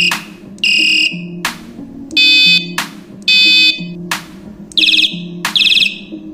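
Electronic bicycle horn sounding a series of short beeps of under half a second each, changing from a plain tone to a harsh buzz and then a warbling tone, with sharp clicks between the beeps at an even spacing.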